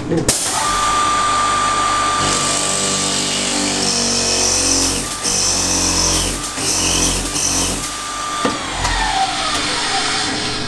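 Motor-driven pipe-making lathe running, its spinning cutter biting into a wooden pipe block and throwing off chips, with a harsh cutting noise through the middle. Near the end the machine's pitch falls away.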